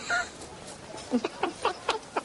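A man laughing: a quick run of short "ha" sounds, about four a second, starting about a second in.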